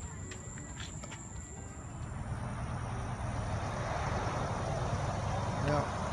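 A passing road vehicle, its noise building steadily over the second half over a low outdoor rumble.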